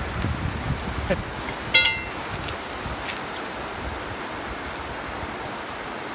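Clothing rubbing against the phone's microphone for the first second or so, then a short high squeak about two seconds in. After that comes a steady, even background noise.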